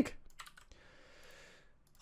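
A few faint, quick computer keyboard clicks in the first half second, then a faint hiss.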